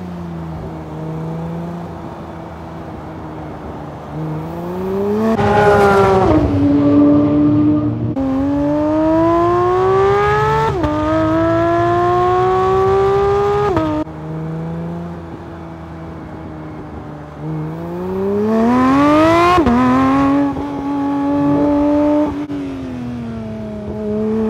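Porsche 911 GT3 (992) naturally aspirated 4.0-litre flat-six accelerating hard through the gears. The pitch climbs steeply and then drops at each upshift, twice in a first run from about 4 s in and once more in a second run from about 17 s in. Between runs there are quieter stretches of a lower, steadier engine note, and the revs ease off near the end.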